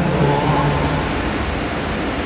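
Live concert sound heard from the audience through a phone or camera: a held low note of the music dies away about a second in, leaving a dense, even wash of noise from the hall.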